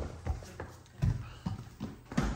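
Footsteps on a wooden floor: a series of low thumps roughly half a second apart.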